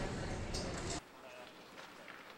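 Busy film-set background noise with crew voices and short hissing bursts, which cuts off abruptly about a second in to a much quieter room with faint distant voices.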